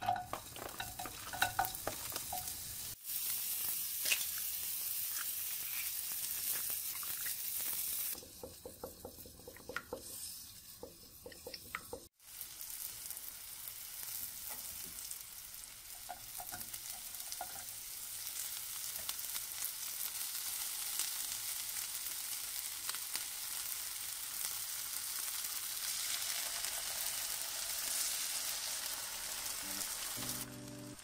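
Strips of cured pork sizzling in a hot nonstick frying pan: a steady frying hiss, with scattered light clicks of a utensil stirring in the pan.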